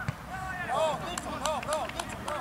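Several short shouts from players on the pitch, calling out in quick succession, with a sharp knock right at the start and a few light clicks.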